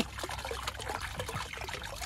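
Water trickling and lightly splashing in a small garden pond, with a steady patter of small drips.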